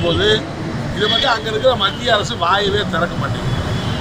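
A man speaking Tamil in a steady flow, over a constant low background rumble.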